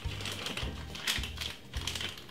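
Background music with a low pulsing beat, under a run of light irregular clicks and taps, several a second.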